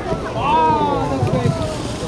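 A person's drawn-out exclamation, its pitch rising then falling, over the steady low rumble of a boat and wind noise on the microphone.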